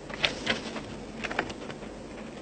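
A pause in speech with a few short, faint clicks: two close together near the start and a quick cluster a little past the middle, over a low steady hum.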